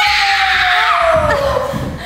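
A child's long, drawn-out scream that slowly falls in pitch and fades out shortly before the end.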